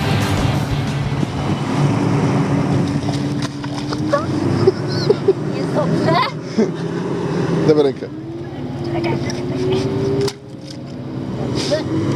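A 4x4's engine running steadily, with music over it at first and short shouts and laughter from about four seconds in. The engine's pitch rises slowly near the end before the sound cuts off suddenly.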